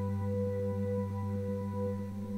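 Steady background drone of several held tones, low and mid-pitched, unchanging throughout: the binaural-beat ambient track used as a sleep-learning bed.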